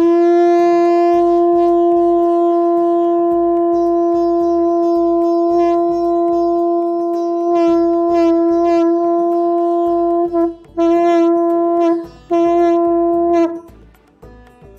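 Conch shell (shankh) blown as a horn: one long steady note of about ten seconds, then two shorter blasts near the end.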